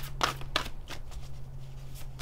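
Oracle cards being handled, with a few quick snaps and rustles in the first half second and quieter handling after, over a steady low hum.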